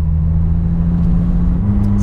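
Venturi 260 LM's turbocharged PRV V6 engine running under way, heard from inside the cabin as a steady low drone whose pitch steps up slightly near the end as the revs rise.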